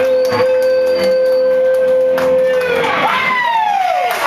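A live rock band holding one long steady note, which stops about three seconds in as audience members break into whooping howls that swoop up and down in pitch.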